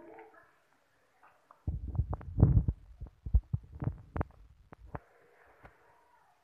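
Handling noise close to the microphone: a run of low thumps, knocks and rubbing from about two to five seconds in, as the open textbook and the recording phone are moved about.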